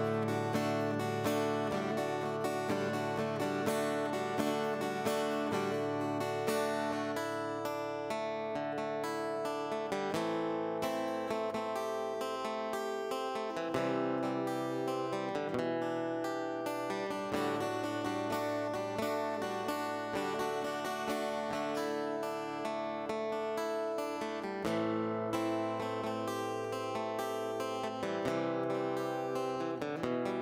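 Solo cutaway acoustic-electric guitar, plugged in, playing a continuous instrumental medley of chords and bass notes at a steady level.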